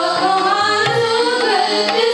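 Sikh kirtan: girls' voices singing a devotional melody over two harmoniums, with tabla keeping the rhythm.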